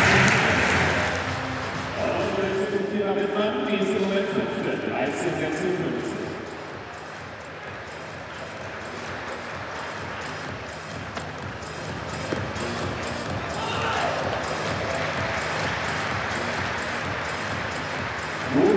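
Busy indoor athletics-hall sound. A voice over the hall loudspeakers with music comes a couple of seconds in, then a quieter stretch with an even run of claps, and crowd noise swells about fourteen seconds in around a triple jump.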